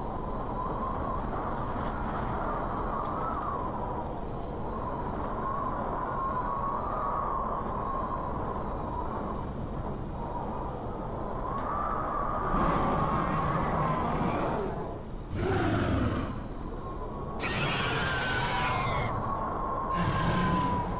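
Atmospheric sound-effect intro to a song: a steady rumbling noise with a thin, wavering whistle-like tone above it. In the second half it swells, with two short louder bursts, the second brighter and with gliding tones.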